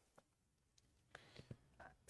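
Near silence: room tone, with a few faint short clicks in the second half.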